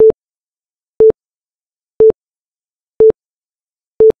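Countdown timer sound effect: short identical mid-pitched beeps, one each second, with silence between them.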